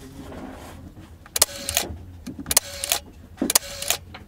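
A Leica M8 digital rangefinder's shutter fired three times, about a second apart. Each release is a click followed by a short, steady whir as the camera's motor recocks the shutter, ending in a second click.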